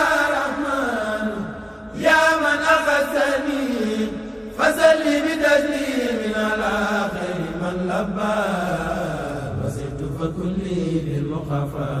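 Voices chanting Arabic devotional verses (a Mouride xassida) in long drawn-out melodic phrases, each starting high and sliding down; new phrases begin about two and about four and a half seconds in, followed by a longer held passage.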